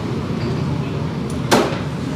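Steady background clatter and rumble of a busy noodle-shop kitchen, with one sharp metallic clank about one and a half seconds in as a steel broth pitcher is dipped against the big soup pot.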